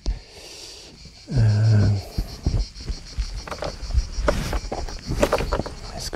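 Footsteps and scuffs of a person clambering over rocks, irregular knocks and scrapes.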